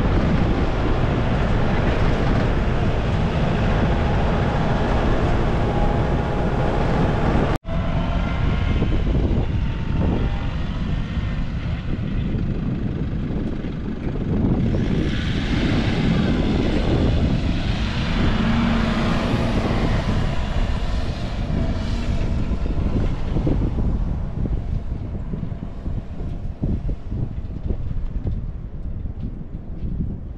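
Four-wheel-drive ute driving on soft beach sand, a steady rumble of engine and tyres that grows louder and brighter as it passes close by about halfway through, then eases as it moves off.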